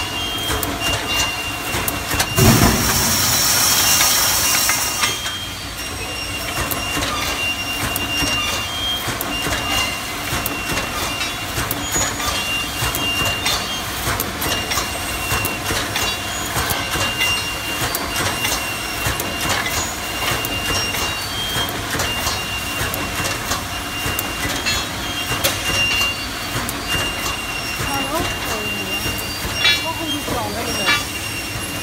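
Automatic welded wire mesh machine running, its resistance-welding beam working in a rapid, continuous train of clicks and knocks as the mesh is welded and fed forward. A loud hiss sounds for about three seconds, starting about two seconds in.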